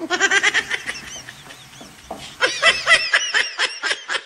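High-pitched cackling in fast, repeated short bursts that settle into a regular pulse of about four or five a second near the end.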